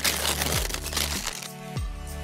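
Wrapping paper tearing and crinkling as a present is unwrapped, a noisy rustle that is loudest in the first half-second and thins out over the next second, over light background music with a steady beat.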